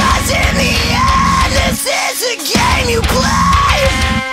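Heavy rock song with a yelled, screamed lead vocal over drums and distorted band backing; the low end drops out briefly near the middle before the full band comes back.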